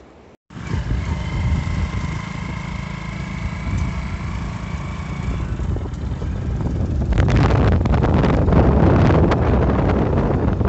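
A motor vehicle moving at road speed: a steady low engine rumble with a faint steady whine, and wind buffeting the microphone, growing louder and rougher about seven seconds in.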